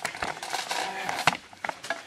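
Irregular clicks and knocks of a handheld camera being picked up and moved about, with no machine running.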